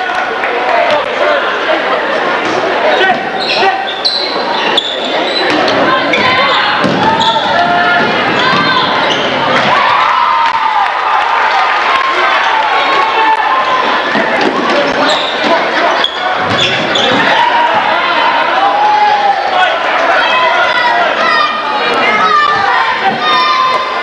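A basketball dribbling and bouncing on a hardwood gym floor during game play, with spectators' voices talking and calling out, echoing in a large gymnasium.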